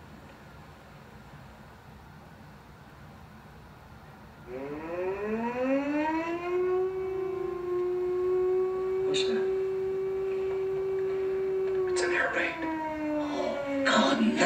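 Air-raid siren starting to wind up about four and a half seconds in. It rises in pitch to a steady wail, then begins to fall away near the end.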